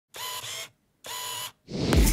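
Two camera-shutter sound effects, each about half a second long, then a rising whoosh near the end.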